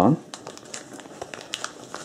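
Small plastic packet crinkling as it is handled: a scatter of light, irregular crackles.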